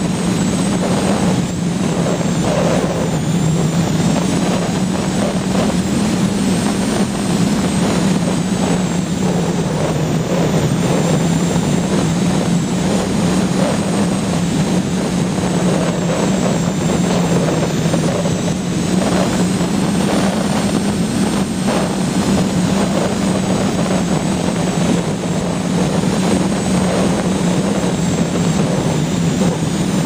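The electric motor and propeller of an Art-Tech Diamond 2500 RC powered glider running at a steady drone, picked up by a camera riding on the plane, with airflow rushing over the microphone.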